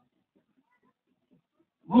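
Near silence in a pause between a man's spoken sentences, with his speech starting again near the end.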